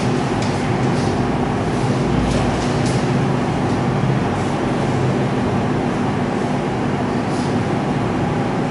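Steady, even rumbling noise with a low hum running under it, and a few faint ticks scattered through the first half.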